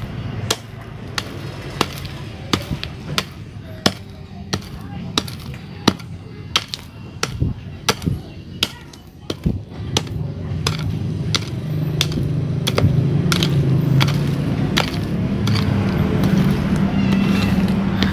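A hand-held metal pick striking and scraping into stony soil, about one and a half strikes a second, digging a planting hole. A low steady rumble grows louder from about halfway through.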